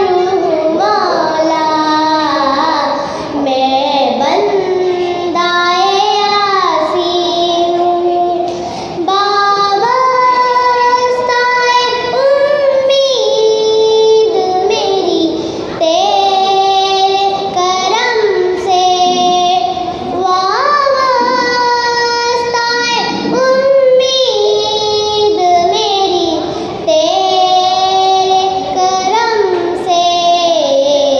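A young girl sings a naat solo into a microphone, with long held notes that bend and glide between pitches.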